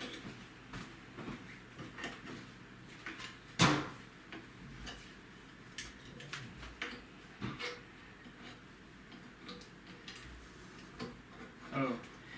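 Scattered small clicks and knocks of a plastic-and-metal holder being worked by hand onto the mounting screws of the ArcDroid CNC's carriage, a tight fit, with one louder knock about three and a half seconds in.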